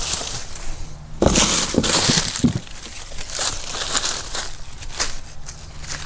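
Dry, dead banana leaves rustling and crackling as they are handled and laid down by hand, in irregular bursts that are loudest a little over a second in.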